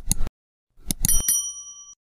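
Sound effects of a subscribe-button animation: a pair of quick mouse clicks, then more clicks about a second in followed by a bright bell ding that rings on and fades away.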